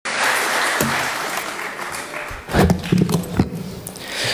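Audience applause, dying away after about two seconds, followed by a few words from a low voice.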